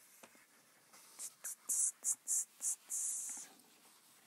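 Whiteboard eraser rubbing across the board: a quick series of about six short hissing strokes back and forth, the last one longer.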